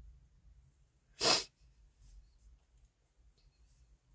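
A single short, sharp breath noise from a person close to the microphone, about a second in; otherwise only low background rumble.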